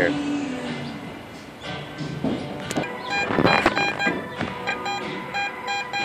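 Garrett AT Gold metal detector giving a run of short, evenly pitched beeps in the second half, the sign of a metal target under the coil, over music playing on the beach.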